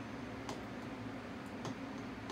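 A few light clicks of a spoon against a glass pesto jar while pesto is scooped out, over a low steady hum.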